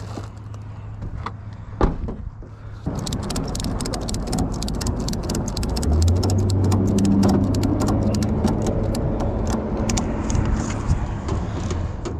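Ratchet tie-down strap being cranked tight, a quick run of clicks from about three seconds in until near the end, over a steady low hum.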